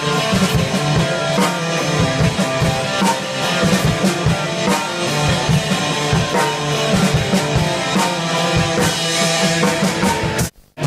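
Hard rock band playing live at practice, recorded on an iPhone: a drum kit hitting busily under guitar.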